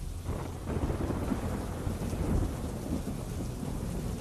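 Heavy rain falling with low rumbling thunder, a dense steady noise with a deep rumble underneath.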